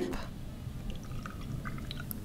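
A shaken cocktail strained from a metal shaker into a glass of ice: a faint, soft pour of liquid with a few light ticks.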